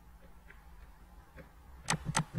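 Computer mouse clicks: a couple of faint clicks, then one sharp, much louder click near the end, over a low steady hum.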